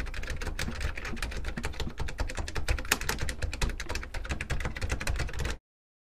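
Keyboard-typing sound effect: a fast, dense run of key clicks that stops abruptly near the end.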